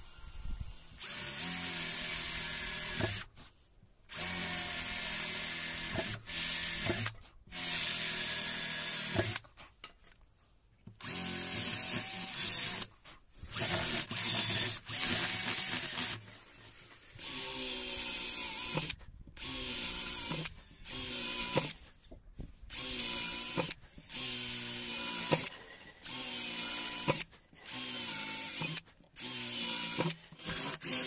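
Cordless drill with a long twist bit boring a row of closely spaced holes through a wooden board to rough out slots. It runs in short bursts of a second or two with brief pauses between holes, and its motor whine holds a steady pitch during each burst.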